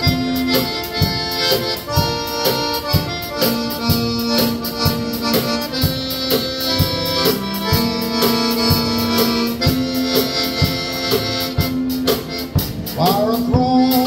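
Live band playing: an accordion with a steady drum-kit beat and a saxophone, about two drum strokes a second. A voice starts singing near the end.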